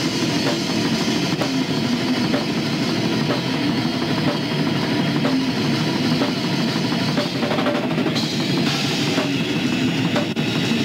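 Death metal band playing live: rapid drumming with bass drum and cymbals under dense distorted guitar. The cymbals come up brighter near the end.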